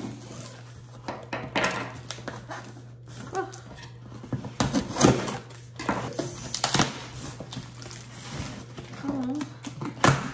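A kitchen knife slitting the packing tape on a cardboard box, with several sharp scraping, tearing bursts, then cardboard flaps rustling as the box is pulled open near the end.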